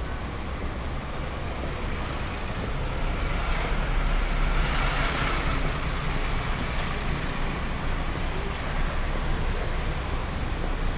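Road traffic: a queue of cars creeping along the street beside the pavement, a steady low engine rumble with road noise. One vehicle grows louder and passes close by about four to five seconds in.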